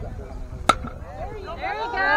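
A bat hitting a pitched ball once, a single sharp crack with a short ring about two-thirds of a second in. Shouting voices from the crowd rise near the end.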